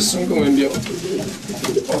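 Racing pigeons cooing steadily in a breeding loft where the birds have been paired up.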